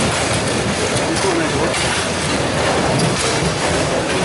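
Continuous, irregular clatter of foosball play: rods, plastic figures and balls knocking and rattling, with voices in the background.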